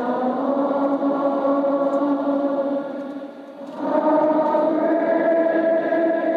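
Slow hymn music in long held chords. One chord fades out a little past three seconds in, and a new, louder chord begins about a second later.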